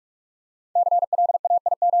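Morse code sent at 45 words per minute as a single steady mid-pitched tone keyed in very rapid dots and dashes, spelling out the word "CLAIM". It starts about three-quarters of a second in.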